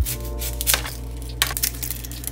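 Background music starts suddenly with a low, steady bass and sustained held tones, and a few sharp clicks sound over it.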